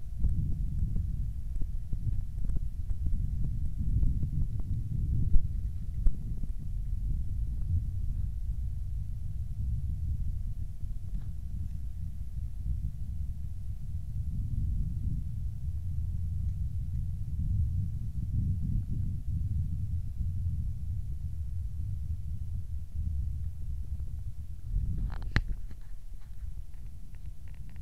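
Low, uneven rumble on a small action camera's built-in microphone as the camera moves, with a faint steady high whine under it. A few knocks come in the first few seconds, and a short sharp noise near the end.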